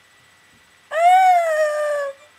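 A girl's high-pitched voice letting out one long held cry, like a howl, starting about a second in, rising a little and then sliding slowly down.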